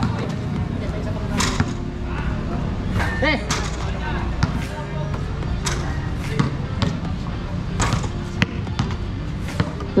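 Basketballs bouncing on a concrete court and striking the hoop as shots are taken one after another: sharp knocks at irregular intervals, roughly one every second.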